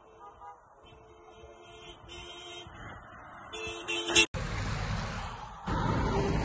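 Three or four sustained, buzzy horn blasts at a steady pitch over the first four seconds. They cut off suddenly and are followed by steady traffic and wind rush.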